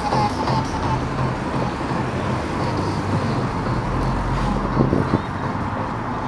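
Road traffic on a city street, with music and a repeating low bass line playing underneath. A deeper rumble comes in about four seconds in, as a vehicle goes by.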